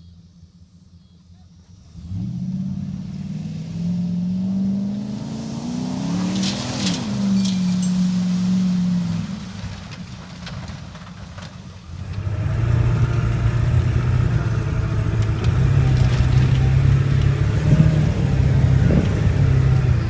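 Pickup truck engines revving, the pitch rising and then falling, as the trucks drive through a mud hole. About twelve seconds in, a louder, steadier engine under load takes over, heard from inside a truck's cab.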